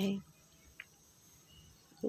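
A woman's voice finishing a word, then near silence: faint room tone with a thin, steady high-pitched whine.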